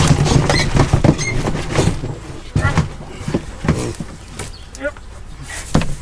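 A pet carrier full of piglets is tipped up and emptied into a straw-bedded wooden pig hut. The crate knocks and scrapes against the wooden boards, loudest in the first second or so, as the piglets slide and scramble out.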